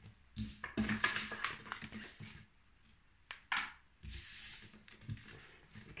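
Tarot cards being gathered up by hand and slid off a tabletop: a run of soft rustles and taps, with a sharp click and a short burst about three and a half seconds in.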